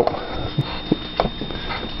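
Steam cleaner hissing as it is worked over a stone hearth, with a few light knocks about half a second, one second and a second and a quarter in.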